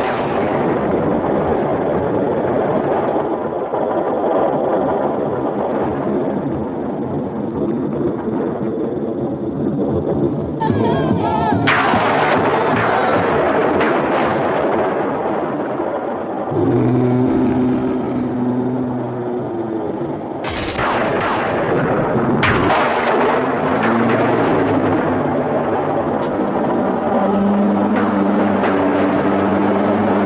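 Dramatic television score mixed with rumbling effects. The first part is a dense, noisy wash; held chord tones come in about halfway through, and there is a single sharp hit about two-thirds of the way in.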